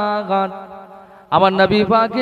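A man's voice in sing-song, chanted sermon delivery: a long held note that tails off about half a second in, a short pause, then drawn-out chanted syllables resume about 1.3 s in.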